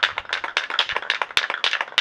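An aerosol spray paint can being shaken, its mixing ball rattling in quick sharp clacks, about ten a second.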